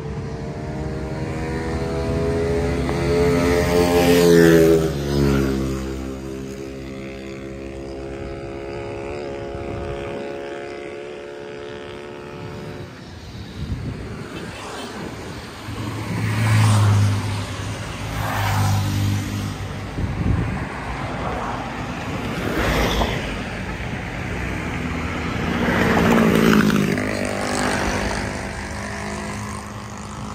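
Motor vehicles passing close by on a city street, their engines rising and falling in pitch as they go by. The loudest passes come about four seconds in and again near seventeen and twenty-six seconds.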